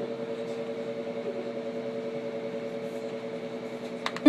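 A steady low hum, two held tones with a faint even pulsing in loudness.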